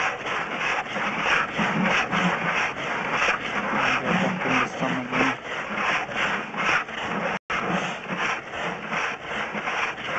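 Drain inspection camera being pushed along a pipe on its push rod: a steady rhythmic rubbing, about three strokes a second, with a momentary dropout about seven seconds in.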